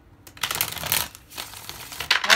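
Tarot cards being shuffled by hand: a burst of card noise starting about half a second in and lasting about half a second, with more shuffling near the end.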